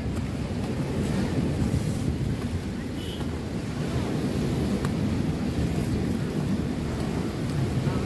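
Wind rumbling on the microphone over the steady wash of surf on the beach.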